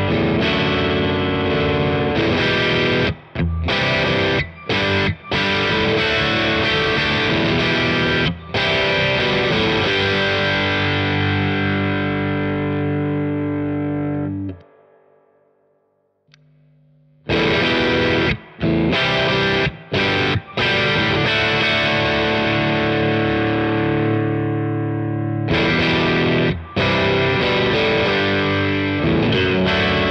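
Electric guitar played through a Supro Black Magick Reverb combo amp: chords and riffs in phrases with short gaps between them. About halfway through, the sound dies away to near silence for a couple of seconds, then the playing starts again.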